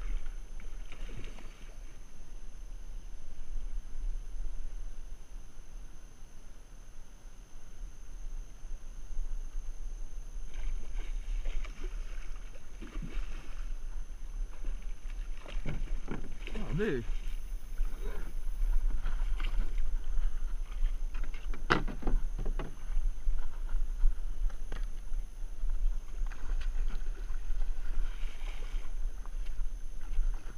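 A hooked musky thrashing and splashing at the surface in shallow water, in scattered bursts that grow more frequent in the second half, with one sharp splash just before the 22-second mark. Throughout there is a low rumble of wind on the microphone.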